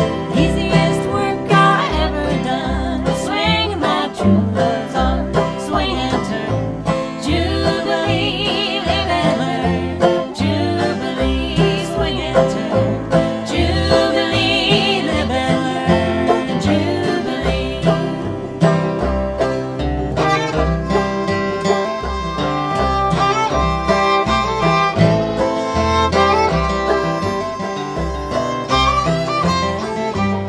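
Old-time string band music: upright bass plucking a steady beat under acoustic guitar, banjo and fiddle.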